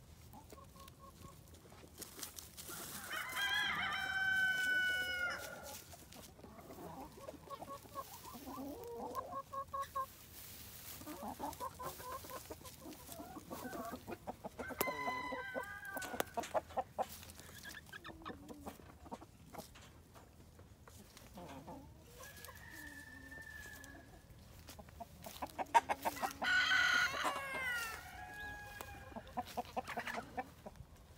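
A flock of chickens clucking, with a rooster crowing three times: once a few seconds in, once at the middle and once near the end.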